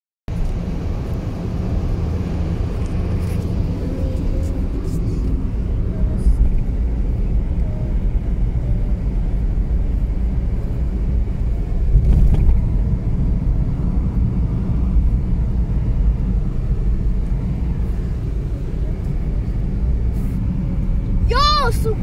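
Car cabin noise while driving on a highway: a steady low rumble of road and engine, with a couple of brief louder bumps. Near the end a voice exclaims.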